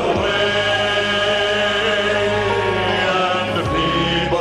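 Men's vocal ensemble singing a gospel song into handheld microphones, holding one long chord before moving to new notes near the end.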